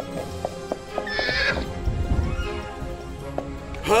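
Cartoon unicorn hooves clopping several times, then a short high-pitched unicorn whinny about a second in, over background music. A low rumble builds through the second half.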